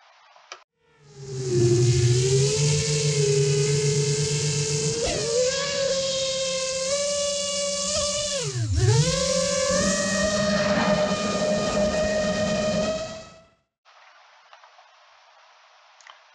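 Motors and propellers of a 7-inch long-range FPV quadcopter whining in flight, heard from the onboard camera. The whine starts about a second in and its pitch steps up with the throttle. Around nine seconds in it drops sharply and recovers, then cuts off shortly before the end.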